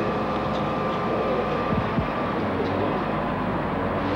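Heavy vehicle engines running steadily at a rescue site, a continuous rumble with a steady hum, and a couple of low knocks about two seconds in.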